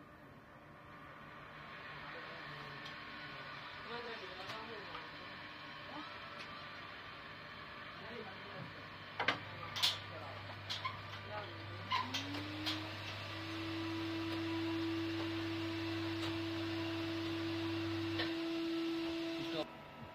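Electric projector lift running as it raises the projector platform, with a steady hum. About twelve seconds in, a tone rises in pitch and then holds. A few sharp clicks or knocks come around ten seconds in, and the sound cuts off just before the end.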